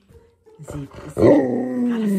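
Alaskan Malamute howling: one long drawn-out howl that begins about half a second in, grows loud after a second and holds a steady pitch.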